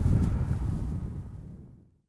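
Wind rumbling on the microphone, a low noise that fades out to silence near the end.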